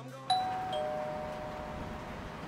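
Two-note doorbell chime: a higher ding and then a lower dong, both ringing on for over a second.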